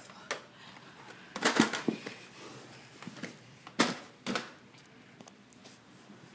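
A few scattered sharp clicks and knocks of handling, loudest about a second and a half in and again near four seconds in, over a quiet room.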